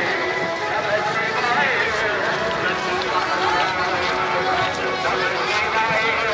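Singing voices over music, at a steady level with no pauses.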